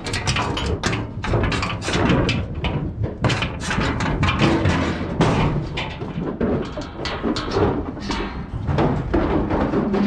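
Irregular metallic knocks and clangs from an aluminium livestock trailer's body and gates, over background music.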